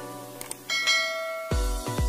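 Intro music with a click sound effect and a bell chime, the notification-bell sound of a subscribe animation. The chime rings and fades, and about a second and a half in an electronic dance beat with a heavy kick drum comes in.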